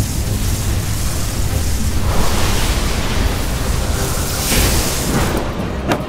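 Sound effect of a thunder storm vortex: a loud, dense, continuous wash of noise with a deep rumble, swelling about two seconds in and again near five seconds, with music underneath.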